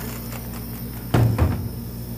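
The hinged lid of an AP Lazer laser engraver being pulled down and shut, landing with a single thump a little past halfway, over a steady low hum.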